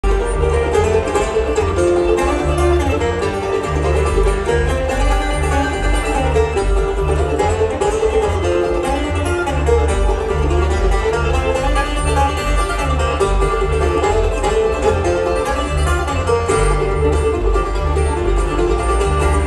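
Live bluegrass band playing an instrumental passage on acoustic guitar, banjo and upright bass, with a steady rhythm and no singing.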